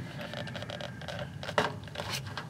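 Quiet handling noise with faint light clicks: cast lead bullets shifting in a plastic bowl as it is held and moved.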